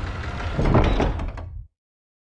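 Heavy crushing sound effect, full in the lows, that builds for about a second and then cuts off sharply before the end.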